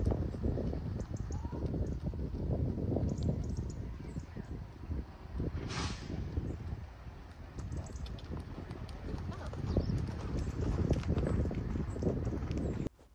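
Hoofbeats of a pony cantering on a soft all-weather arena surface, over a steady low rumble.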